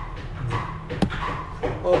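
Indistinct voices in the background, with a single sharp key click about a second in.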